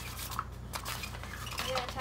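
Cat's Meow electronic cat toy running, with a steady low motor hum and a rapid clatter of clicks and ticks as its wand whips around the fabric cover and floor.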